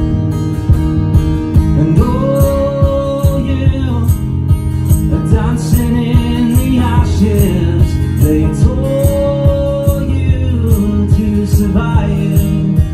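A man singing a slow melody with two long held notes, over his own steadily strummed acoustic guitar.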